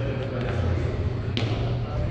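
Indistinct voices in a large hall over a steady low hum, with one sharp knock a little over a second in.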